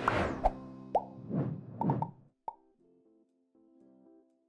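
Title-transition sound effects: a whoosh, then a quick run of about five short pitched blips, after which faint music comes in.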